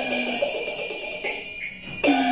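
Cantonese opera accompaniment ensemble playing an instrumental passage between sung lines: held instrument notes over a struck percussion ring that fades away, with a fresh strike right at the end.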